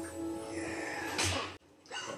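Film soundtrack music with a rising rush of noise about a second in. The sound then cuts out suddenly near the end.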